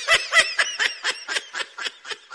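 A person snickering, a quick run of short laughing bursts about eight a second.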